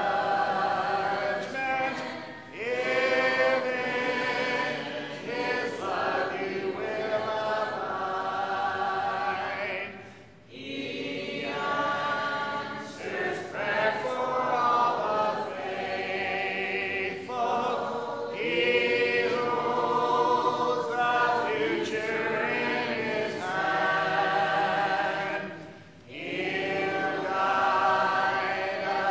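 Church congregation singing a hymn in unison without instruments, led by a song leader. The singing comes in sustained lines with short breaks between phrases.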